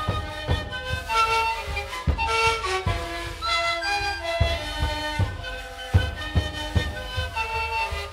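Sikuri ensemble: many siku panpipes play a breathy melody together in held, stepping notes, over deep strikes on large bombo drums beaten by the same players.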